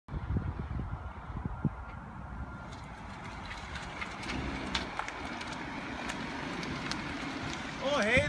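A 2014 Ford Mustang convertible's 3.7-litre V6 running at low speed as the car rolls up and stops close by, settling into a steady low hum from about four seconds in. Low rumbling on the microphone in the first couple of seconds.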